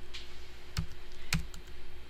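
A few separate keystrokes on a computer keyboard as a file name is typed, each a sharp click with a dull thump, over a faint steady hum.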